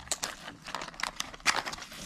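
Clear plastic blister packaging crackling and clicking in irregular sharp snaps as it is handled and pulled out of its cardboard sleeve.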